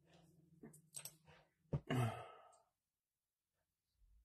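A person's quiet sigh about halfway through, a short voiced breath falling in pitch, after a few soft breaths and a single click.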